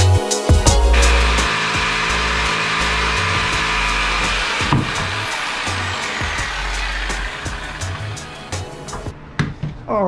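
A handheld electric router runs steadily, cutting wood, over a background beat with bass drum. The router noise stops about nine seconds in.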